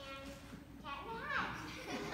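A child's voice speaking, with a brief pause early on and then a line delivered with a sharp rise and fall in pitch.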